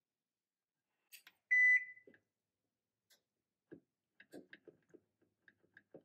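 Electronic oven control giving one short, high beep as the bake knob is switched on, followed by a run of soft clicks as the knob is turned to set the temperature to 375.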